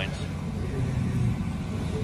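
A steady low hum over faint background noise, with no distinct knock, click or tool sound standing out.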